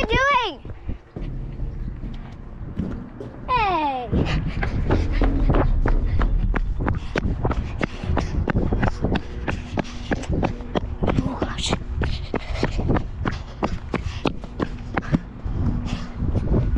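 A girl's wordless voice: a high wavering note at the start and a falling, sliding call about four seconds in. After that come the knocks and rustles of a hand-held action camera swinging as she walks, with wind rumbling on the microphone.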